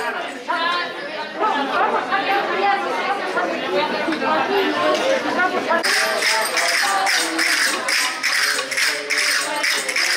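Several voices chattering. About six seconds in, a hand percussion instrument starts beating a steady rhythm of about three strokes a second, with voices underneath.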